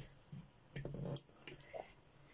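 Lid of a stainless steel milk frother being gripped and lifted off. A short scraping rattle comes about a second in, followed by a couple of sharp clicks.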